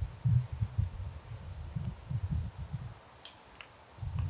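Irregular low thumps and bumps of handling noise on the table and microphone stands, followed by two short sharp clicks near the end.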